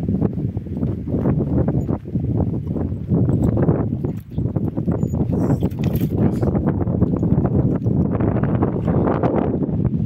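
Wind buffeting a phone microphone in a loud, continuous low rumble, with irregular crunching footsteps on a dirt road.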